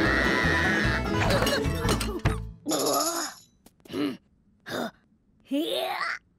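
Upbeat cartoon music with a wavering, sliding tone that cuts off about two and a half seconds in. Then come four short pitched vocal grunts from a cartoon character, with near silence between them.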